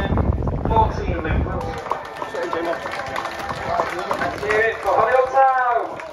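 Voices of people talking around the pitchside, no clear words, with wind rumbling on the microphone for the first couple of seconds until it cuts away suddenly; a louder voice stands out near the end.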